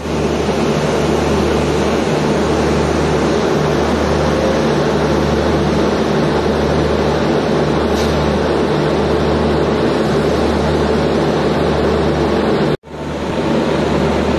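Electric locomotive's cooling blowers and traction equipment running with a loud, steady hum. The sound cuts out suddenly about a second before the end and then resumes.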